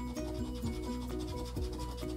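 Background music with a short repeating melody over a steady bass, and under it a coin scratching the latex coating off a lottery scratch-off ticket's prize box.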